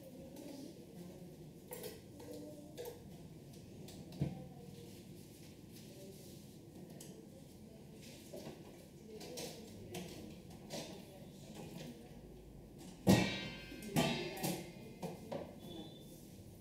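Hands rubbing and kneading a man's hair and scalp in a dry head massage, with soft rustling and small taps throughout. Near the end comes one loud, sharp hit, followed by a few smaller ones.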